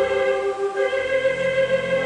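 Theatre organ playing held chords; about halfway the harmony changes and a low bass note comes in.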